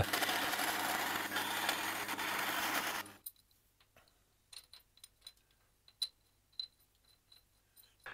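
Bandsaw running steadily as it cuts through 6 mm aluminium plate, stopping abruptly about three seconds in. Then near silence with a few faint, light clicks as the aluminium bracket is handled against the milling machine's casting.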